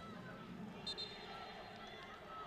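Faint pitch-side sound of a football match with no crowd: a low background hum with distant players' calls, and a short high whistle-like tone about a second in.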